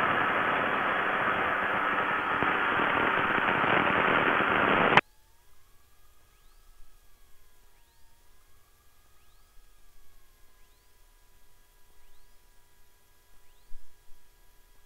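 A Cessna 172's six-cylinder Continental O-300 engine and propeller running at taxi power, heard as a steady noise through the cockpit headset intercom. This is an engine that has lost power and runs rough, which the pilots suspect is a bad spark plug. The noise cuts off abruptly about five seconds in, leaving near silence with a faint wavering whine.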